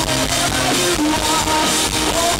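Live rock band playing an instrumental passage: drum kit, electric guitar and keyboards, loud and steady, with held melody notes over the beat.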